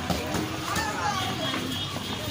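Children's voices talking over a steady background of street noise.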